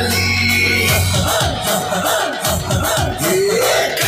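Loud music with a heavy bass line, and a rising glide in pitch near the end.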